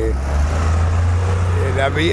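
City bus driving past close by: a steady, loud, low engine rumble with road noise.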